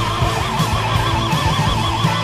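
Hard rock music: a high note held with wide, even vibrato over steady drums and bass.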